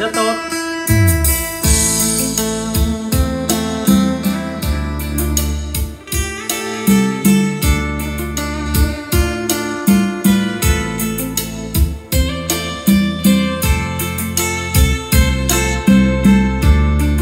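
Recorded music with guitar and a steady bass line, played back through a Sansui 6060 stereo receiver driving a large 200 W Yamaha loudspeaker.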